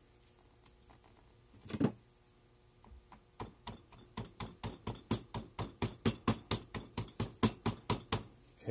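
The end of a steel ring mandrel ramming Petrobond casting sand down into a steel flask: a rapid, even run of dull knocks, about four a second, starting about three and a half seconds in. One single louder knock comes a little before it.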